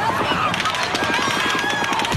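Rapid automatic gunfire, many shots a second in a fast unbroken string, recorded from a distance on an amateur device, with raised voices underneath. The narrator takes the fire for more than one gun.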